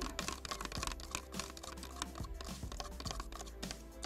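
Wooden stir stick clicking and scraping against a thin plastic cup as acrylic paint is stirred briskly toward a thin, ink-like pouring consistency: a quick, irregular run of light ticks.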